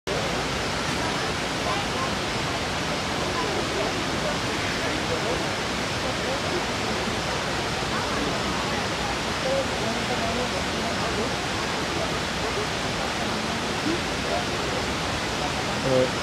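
Steady rushing of running water, an even hiss that holds at one level throughout, with faint distant voices underneath.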